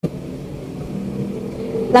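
Steady low hum with a few held tones, slowly growing louder: background noise of a new recording starting at a cut. A woman's voice begins near the end.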